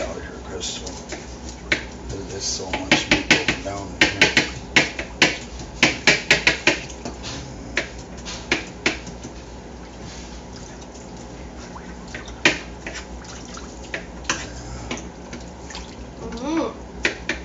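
Hands working meat in a bowl of water in a stainless-steel sink: sloshing and splashing with a quick run of clicks and clatters through the first half, then quieter, with a few more sharp knocks later on.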